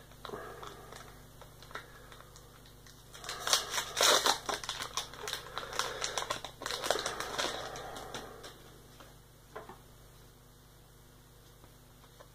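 Foil booster pack wrapper of a Pokémon trading card pack being torn open and crinkled, a dense run of crackling and rustling for about five seconds in the middle, with softer rustling near the start and a single tap near the end.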